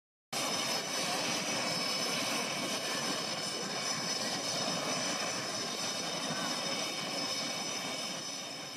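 Jet aircraft in flight: a steady rush of engine and air noise with several thin, high whining tones over it, starting abruptly just after the beginning.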